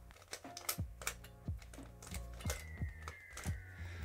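Plastic layers of a Lanlan curvy rhombohedron twisty puzzle being turned quickly by hand, a run of light, uneven clicks as the last-layer corners are cycled.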